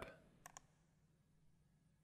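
A single faint computer mouse click, press and release close together, in near silence.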